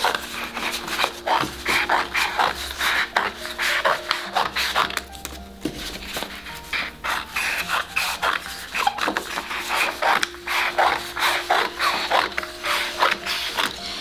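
Scissors cutting a sheet of paper into strips, a run of short irregular snips, over soft background music with held tones.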